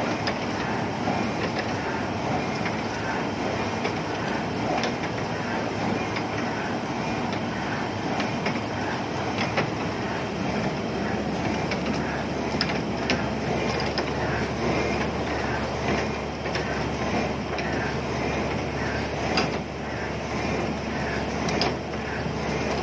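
Diesel machinery running steadily while fresh concrete pours down a chute into a steel tremie hopper on a bored-pile casing, with scattered rattling clicks.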